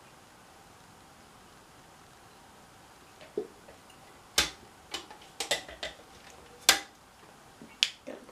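Small plastic makeup cases and tools being handled on a counter: a few seconds of quiet room tone, then a series of about eight sharp clicks and taps, irregularly spaced, the loudest a little past the middle.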